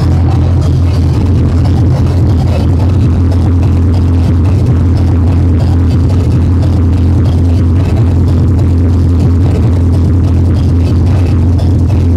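Hardcore techno DJ set played loud over a club sound system, with a heavy, steady bass.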